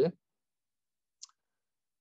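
A pause in speech: dead silence broken by one short, faint click about a second in.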